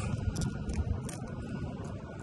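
Dry, lichen-covered oak bark crackling as fingers pick and pull pieces off the trunk: a few short, sharp crackles over a low rumble.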